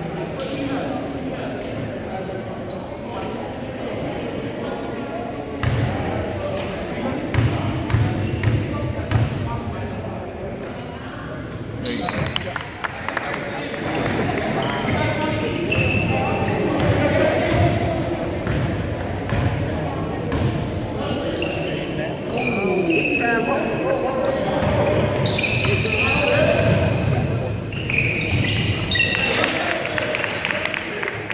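A basketball bouncing on a hardwood gym floor during play, with short high squeaks from about twelve seconds in and players' and spectators' voices, all echoing in the large gym.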